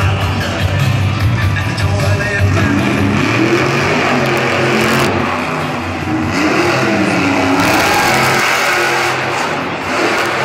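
Grave Digger monster truck's engine revving up and down as the truck spins and wheelies, with loud music playing over it.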